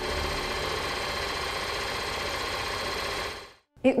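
Film-projector sound effect: a steady, rapid mechanical clatter and whir that fades out about three and a half seconds in.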